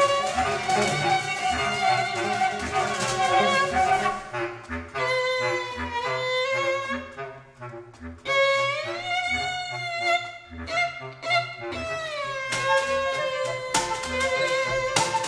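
Small improvising chamber ensemble of violin, viola, flute, bass clarinet and percussion playing a free, spontaneously conducted piece. A dense layered texture for the first few seconds thins to held notes that glide slowly up around the middle and down near the end, over a soft low repeating pulse.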